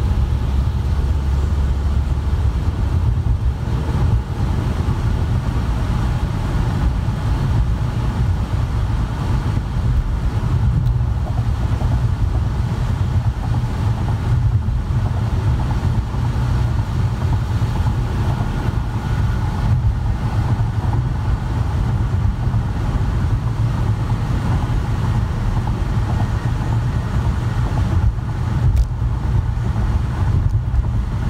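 Steady road noise inside a moving car's cabin: a low rumble of engine and tyres on wet pavement, with a hiss of tyre spray above it.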